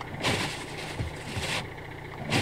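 Windscreen wipers sweeping thick snow off the glass, one scraping rush lasting about a second and a half that stops shortly before the end, heard from inside the car over the engine idling.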